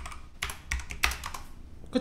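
Computer keyboard being typed on: a few quick keystrokes about half a second to a second in.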